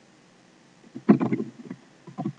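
Keyboard keys struck in a quick burst of mashing, a rapid run of clicks starting about a second in and lasting under a second.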